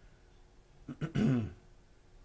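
A man clearing his throat once, a short voiced 'ahem' about a second in, heard against quiet room tone.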